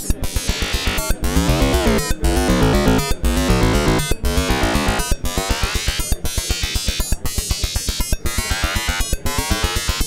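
Eurorack modular synthesizer patch processed by a Joranalogue Delay 1 bucket-brigade (BBD) delay: a rapid pulsing electronic pattern that breaks off briefly about once a second, its tone sweeping up and down in a flanging, comb-like way as the coarse delay time is turned.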